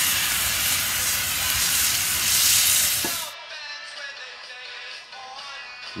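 Leftover pulled pork and mac and cheese sizzling in a cast-iron skillet over a wood fire: a loud, even hiss that cuts off abruptly a little past three seconds in. Quiet background music follows.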